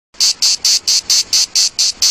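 A rapid run of short, high-pitched rasping chirps, about four a second, eight in a row, each one the same.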